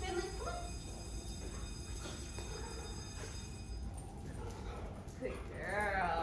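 A woman's voice in short high-pitched calls, one at the start and another near the end, over a low steady room hum.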